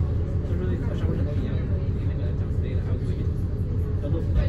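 Bus engine idling with a steady low drone, heard from inside the bus with faint passenger voices in the background.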